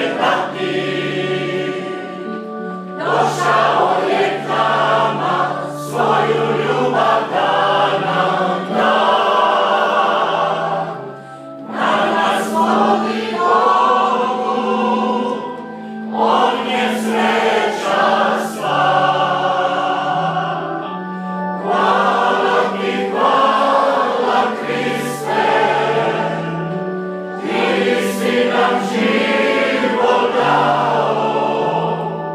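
A mixed choir of men and women singing a hymn unaccompanied by speech. Long sustained phrases follow one another with short breaks for breath.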